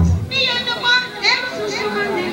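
High-pitched voices calling out with sliding pitch over a reggae sound system. The heavy bass sounds briefly at the start, then drops out.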